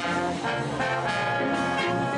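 A big band playing an instrumental swing passage, led by trombones and trumpets with the notes changing in quick succession.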